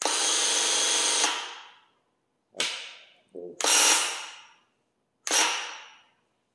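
Graco handheld airless paint sprayer's pump running in trigger bursts: one long burst of just over a second, then three shorter ones, each dying away quickly after release.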